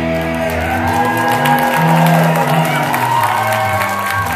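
Live rock band holding the song's final chord on electric guitars and bass, the chord ringing out after the drums stop, with a high note sliding up and back down over it.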